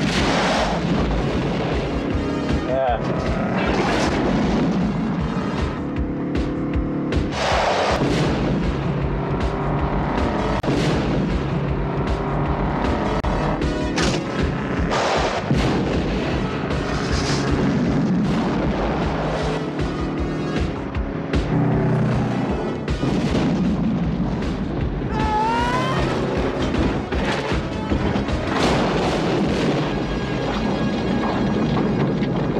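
A film soundtrack of explosions booming one after another every few seconds, mixed with score music.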